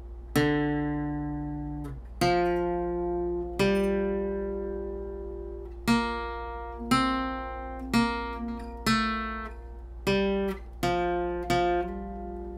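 Ibanez electro-acoustic steel-string guitar with a capo, played slowly: about a dozen picked single notes and two-note intervals of a requinto lead line, each left to ring and fade before the next.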